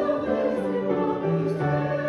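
A group singing a hymn together with keyboard accompaniment, in long held notes that change in steps over a moving bass line.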